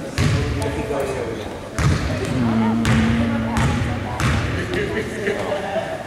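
A basketball bounced on a hardwood gym floor: several loud, irregularly spaced thumps that ring in the hall, over spectators' voices.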